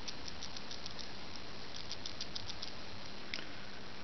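Small neodymium magnet balls of a cube built from uneven, wobbly coins clicking and rattling against each other as the cube is squeezed and flexed in the hands. The clicks are faint and rapid, coming in two bursts, one in the first second and one around two seconds in. The wobbly build is what lets the balls shift and make this noise.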